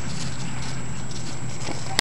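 Puppy paws padding and crunching on pea gravel and concrete, a few faint scattered steps, over a steady low rumble.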